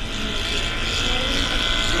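Moving minibus heard from inside the cabin: a steady engine and road rumble with a steady high whine over it.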